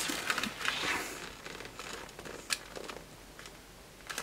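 Handling noise as a coiled cable and a plastic plug-in power supply are lifted out of a fabric bag: cloth rustling with scattered light clicks and knocks, busiest in the first second and fading off, with one sharp click about two and a half seconds in.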